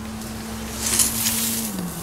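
Sand pouring and sliding out of a tipped glass aquarium onto the ground: a hiss that swells about a second in. A steady low hum runs underneath and drops slightly in pitch near the end.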